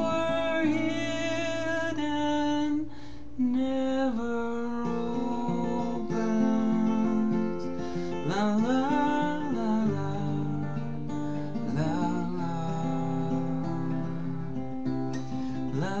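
Steel-string acoustic guitar fingerpicked in an instrumental passage between sung lines. A voice glides in briefly about halfway through, and singing starts again at the very end.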